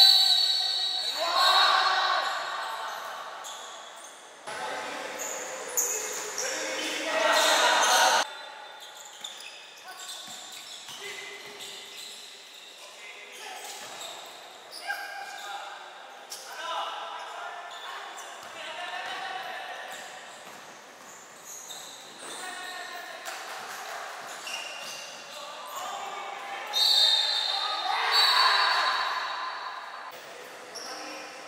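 Basketball game in an indoor sports hall: the ball bouncing on the court, with players' and spectators' voices. The voices rise into louder shouting at the start, for a few seconds from about 5 s in, and again near the end.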